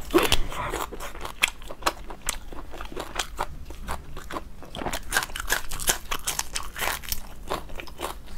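Close-miked crunching and chewing of a raw green onion stalk: a run of quick, crisp crunches, several a second, the loudest bite just after the start.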